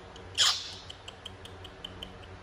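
Baby monkey giving one short shrill squeal that falls steeply in pitch, about half a second in, followed by faint quick high ticks.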